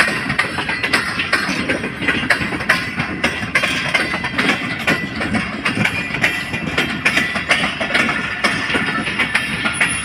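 Passenger train coaches rolling past close by, their wheels knocking and clicking on the rails several times a second over a steady rumble.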